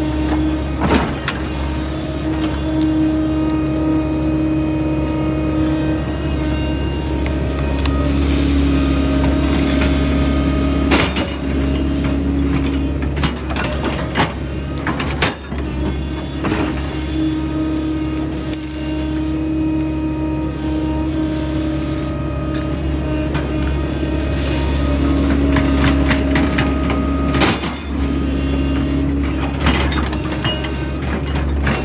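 Excavator engine running steadily under load, with a higher steady tone that comes and goes in stretches of a few seconds as the boom and bucket work. A few sharp clanks and scrapes of the bucket digging into dirt, one about halfway through and another near the end.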